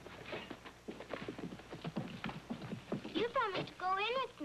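Horses' hooves clopping irregularly on a dirt street as the horses shift and stop. Near the end a horse gives a loud, wavering whinny.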